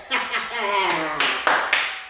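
A man yelling in celebration of a goal, with about four sharp hand claps in the second half.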